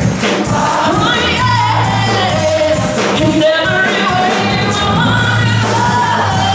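Live worship band playing a gospel song: a woman singing lead over electric guitars, keyboard and drums, her notes held and gliding.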